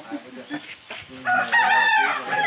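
A rooster crowing: one long held call that starts past the middle and lasts nearly a second.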